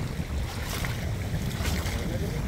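Wind buffeting the microphone over choppy river water lapping around the bathers, a steady low rumble with no distinct strokes.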